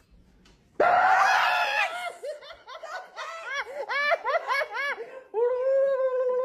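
Near silence, then a sudden loud, high-pitched shriek about a second in as a jump-scare prank goes off, breaking into rhythmic bursts of laughter and ending in a long drawn-out cry.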